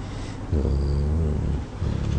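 A man's low, drawn-out hesitation hum, held steady for about a second in the middle, between spoken phrases.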